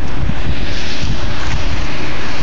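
Strong wind blowing across the phone's microphone: a loud, steady rush of noise with a gusty low rumble.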